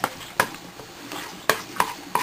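A utensil stirring scrambled egg in a frying pan, knocking and scraping against the pan in a few sharp irregular taps, over a faint steady hiss.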